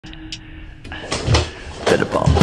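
Several sharp snaps and thuds of karate kata movement: a cotton gi snapping with quick arm movements and bare feet landing on a wooden floor.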